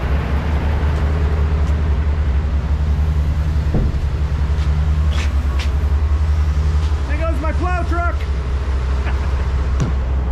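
Dump truck's diesel engine running steadily with the body raised after tipping, a low even drone. A man's voice is heard briefly about seven seconds in.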